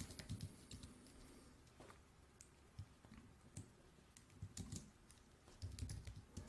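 A few faint, separate keystrokes on a computer keyboard: sparse typing with pauses between the taps.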